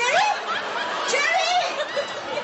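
Studio audience laughing, many voices overlapping in a continuous wave of laughter.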